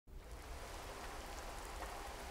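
Steady rain sound effect, an even hiss that fades in quickly at the start and then holds steady.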